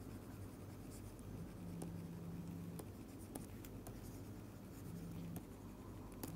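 Faint scratches and light taps of a stylus writing on a tablet screen.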